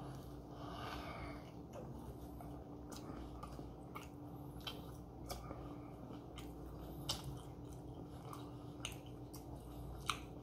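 Faint chewing of a mouthful of grilled tortilla wrap, with a few small sharp mouth clicks scattered through it, over a steady low hum.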